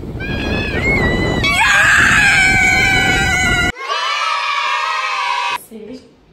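Voices screaming long, held cries over wind noise on the microphone and crashing surf. About three and a half seconds in the wind and surf noise drops away, leaving one held cry that falls slightly in pitch before it cuts off.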